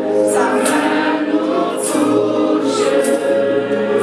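A church worship group singing a gospel song together in French, a woman leading at the microphone, with an electronic arranger keyboard accompanying. A light, high percussion tap falls about once a second.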